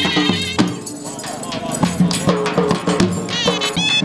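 Dhol drum beating a rhythm for a dancing horse, with a reed pipe playing a wavering melody over it.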